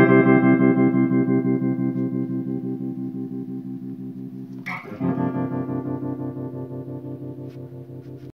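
Telecaster-style electric guitar played through effects: a chord rings and slowly fades with a fast, even pulsing, then a second chord is struck a little over halfway in and left to ring out.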